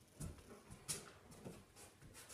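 A large dog's mouth as it takes and works at a food treat from a hand: several faint, soft smacks and clicks, the sharpest about a second in.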